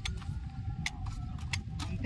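Low, uneven rumble of wind buffeting the microphone in an open field, with four short sharp clicks.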